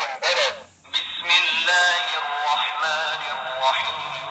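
Recorded male Qur'an recitation played through the small speaker of a handheld player pointed at the page, thin and tinny. A short chanted phrase, a brief pause just before a second in, then a long held chanted line.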